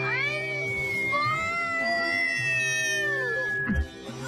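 Cartoon bumper soundtrack: steady background music with a long whistle-like tone gliding slowly downward, over which a cartoon character makes several meow-like calls that rise and fall in pitch.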